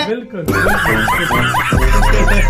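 A man laughing in a quick run of rising bursts, a few each second, starting about half a second in, with music and a deep bass beat coming in near the end.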